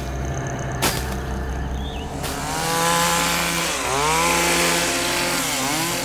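Chainsaw idling, then revving up about two seconds in and cutting through kudzu vines, its pitch sagging twice as it takes the load.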